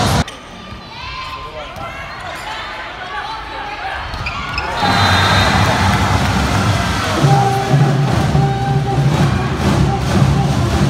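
A sharp hit right at the start, then voices echoing in a large gym. About five seconds in, background music with a steady bass line comes in and plays on over the hall sound.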